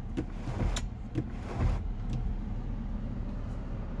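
Power panoramic sunroof of a 2021 VW Atlas opening, its electric motor running steadily as the front glass panel tilts up and slides back, with a sharp click just under a second in.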